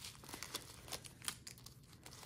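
Faint, irregular crinkling and rustling of plastic bags of diamond-painting drills being handled and pulled out of an organza drawstring pouch.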